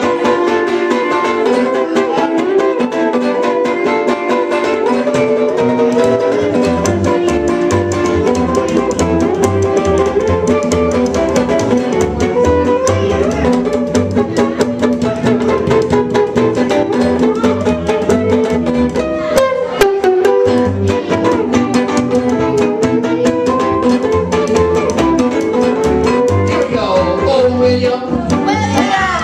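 Acoustic duo music played live: a plucked upright bass and a strummed guitar playing a lively tune with a steady beat.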